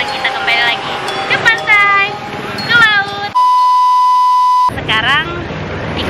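High-pitched voice sounds swooping sharply up and down in quick calls, cut about halfway through by a loud, flat electronic beep that lasts about a second and a half, then more of the swooping voice sounds.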